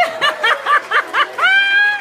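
High-pitched laughter in quick bursts, about six a second, rising into a held squeal near the end.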